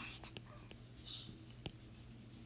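Quiet room with a steady low hum, a soft whisper about a second in, and a few faint ticks of a stylus tapping on a tablet.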